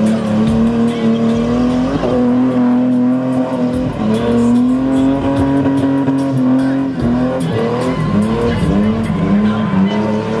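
Ford Cortina spinning car's engine held high in the revs while its rear tyres spin and squeal, the revs dipping briefly and climbing back several times.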